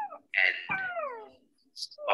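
A cat meowing, a few short calls in quick succession, the longest sliding down in pitch about a second in.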